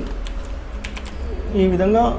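Computer keyboard keystrokes: a few quick key presses typing a word, followed by a voice near the end.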